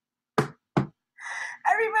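Two quick knocks, about 0.4 s apart, made by hand at a tarot table.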